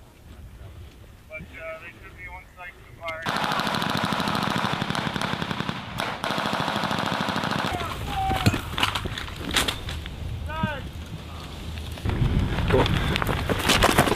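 Sustained automatic machine-gun fire. It starts suddenly about three seconds in and runs for roughly four seconds, then gives way to scattered single shots and bangs.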